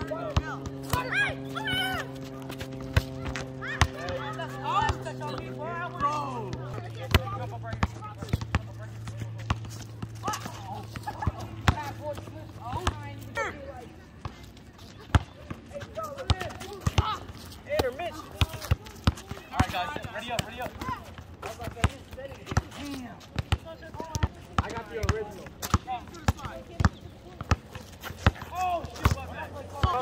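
A volleyball game on an outdoor court: scattered voices of players calling out, with sharp ball hits and knocks throughout. Music plays low held notes through the first half, shifting down once about seven seconds in and stopping around thirteen seconds in.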